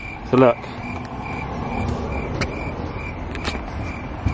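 Fleece blanket rustling as it is spread over the folded-down car seats, with a high beep repeating evenly a few times a second and a couple of sharp clicks partway through.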